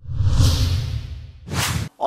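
Whoosh sound effect of a TV news transition graphic. A deep whoosh with a low rumble starts suddenly and fades over about a second and a half, then a second short, sharp swish cuts off just before the end.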